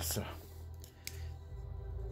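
Hard plastic miniature-painting holder being handled as its grip is pulled loose, with a couple of light plastic clicks, one right at the start and a fainter one about a second in.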